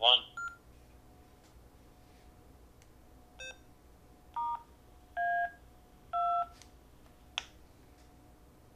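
Yaesu FT2D handheld transceiver sending DTMF tones from its touchscreen keypad: a brief tone, then three longer dual-tone beeps about a second apart, keying a profile-recall command to a SharkRF openSPOT hotspot. A short beep comes just after the start and a sharp click near the end.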